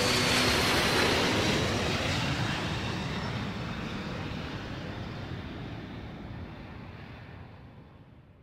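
Jet airliner flying low overhead: a broad rushing engine noise with a faint high whine that drops a little in pitch early on, fading steadily away.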